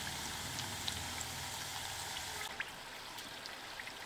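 Chakli deep-frying in hot oil: a steady sizzle with scattered small pops. About two and a half seconds in it drops to a quieter sizzle, as the chakli near the crunchy stage where the frying sound dies away.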